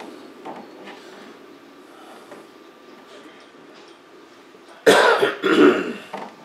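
A man clearing his throat: a sudden loud double burst near the end, after several seconds of faint room tone.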